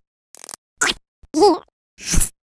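Sped-up cartoon character noises and sound effects played at triple speed, squeaky and chipmunk-pitched. Three short, separate blips: a hissy burst, a quick sweep, then a wavering squeal.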